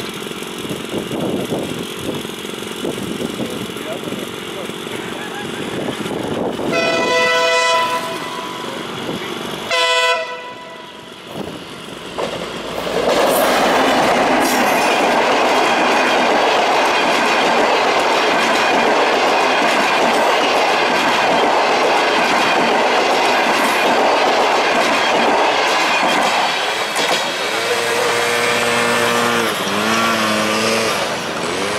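Passenger train sounding its horn as it approaches, a blast of about a second and a half about seven seconds in and a short one about ten seconds in. It then passes close by, a loud rumble with wheel clatter for about fifteen seconds.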